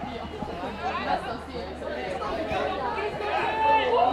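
Several people's voices calling out and chattering over one another, with a louder held call near the end.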